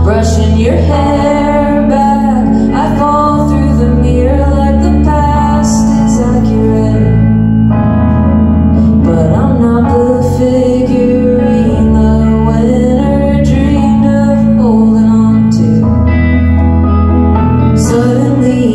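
Live band music from an electric guitar and a stage keyboard, with long held low bass notes under changing chords and a woman singing.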